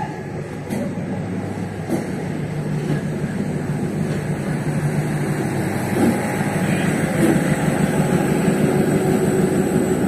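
Diesel-electric multiple unit (DEMU) train pulling out and rolling past at low speed, a steady low rumble of its coaches on the rails with a couple of knocks in the first two seconds. It grows steadily louder as the diesel power car draws near.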